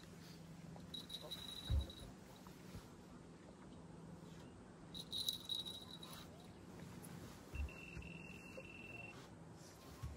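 Fishing boat's motor humming faintly and steadily while trolling, with two soft knocks on the deck and three brief high-pitched tones.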